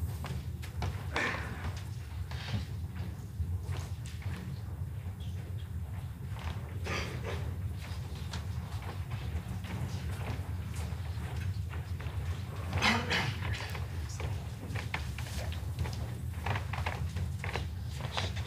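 Quiet indoor arena ambience between shots: a steady low hum under scattered faint knocks and shuffles, with one brief louder sound about thirteen seconds in.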